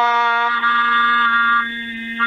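A synthetic text-to-speech voice stretching one syllable, the 'đăng' of 'đăng ký' (subscribe), into a flat held tone about two seconds long. It sounds like a steady buzzer with many overtones.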